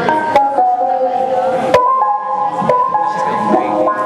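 Electronic keyboard playing held chords that step to new notes every second or so, with two sharp knocks, one just after the start and one a little before the halfway point.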